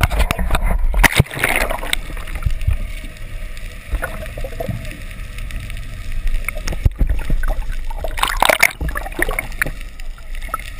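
Water sloshing and gurgling against a GoPro in its waterproof housing as it is dipped under the surface, with a steady low rumble and bursts of splashing near the start and again about eight seconds in.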